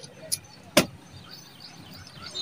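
Two sharp knocks: a faint one about a third of a second in, then a loud one at about three-quarters of a second.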